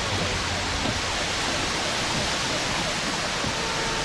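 Heavy storm rain drumming steadily on a car's roof and windows, heard from inside the cabin.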